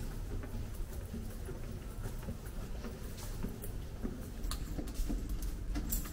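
Footsteps walking along a tiled corridor: soft, irregular taps over a low steady rumble.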